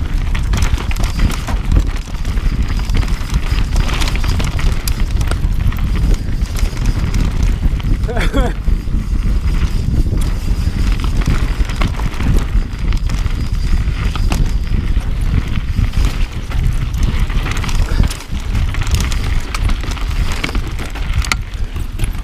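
Mountain bike ridden fast down a rough dirt and rock trail, heard from a handlebar-mounted action camera: heavy wind buffeting on the microphone over tyres rumbling and the bike rattling on the bumps. A brief cry from a rider about eight seconds in.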